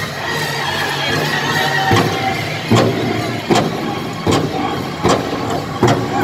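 Powwow drum group: singers holding a high-pitched line over the big drum, with heavy drumbeats coming about one every three-quarters of a second from about two seconds in, and arena crowd noise underneath.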